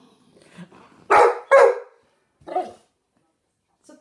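A dog barking: two loud barks in quick succession about a second in, then a softer single bark.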